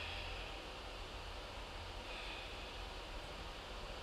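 Quiet room tone with a steady low hum and a person breathing softly, two breaths about two seconds apart.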